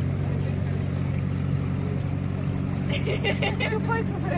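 Motor boat's engine running steadily under way, a low even drone.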